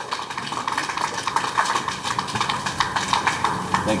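Audience clapping: a thin, uneven patter of many hands.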